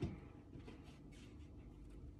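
Faint rustling and handling of a soft fabric dog recovery cone, with a short soft knock at the very start over quiet room tone.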